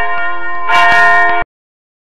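Subscribe-button animation sound effect: mouse clicks over a bright ringing bell chime that is struck again under a second in, then cuts off suddenly about a second and a half in.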